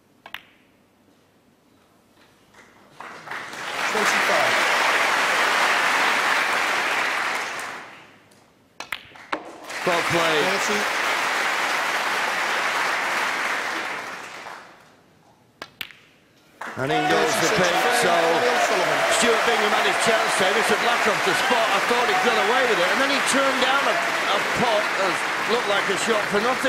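Snooker audience applauding in three bursts, with a single sharp ball click just before the first. The last burst is longer and louder, with cheering voices mixed in, greeting the end of the frame that levels the match at one frame each.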